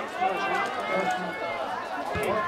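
Several people's voices, overlapping and indistinct, calling out and talking at a distance in an open-air stadium.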